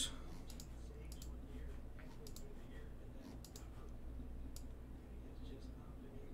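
Computer mouse clicking: a run of light, irregularly spaced clicks over a faint steady low hum.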